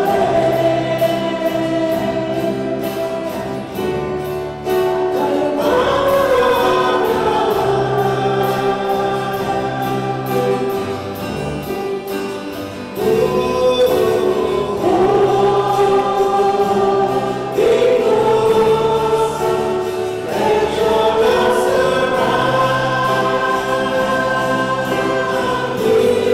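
Church choir singing a gospel-style hymn over low sustained accompaniment notes that change every couple of seconds.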